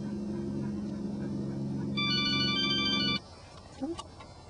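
A steady low hum, joined about halfway through by a held chord of high electronic tones like a phone ringtone. Both cut off suddenly, and a short rising whine follows near the end.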